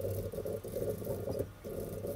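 Rapid computer-keyboard typing in short runs with brief pauses, one of them about halfway through.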